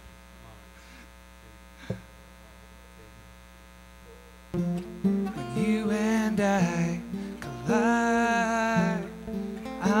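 Steady electrical mains hum through the sound system with a single click, then two acoustic guitars start playing the song's intro about four and a half seconds in.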